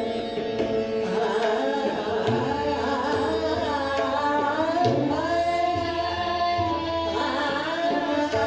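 Hindustani classical female vocal in Raag Bhairav, sung in long gliding phrases over a tanpura drone, with tabla strokes and harmonium accompaniment.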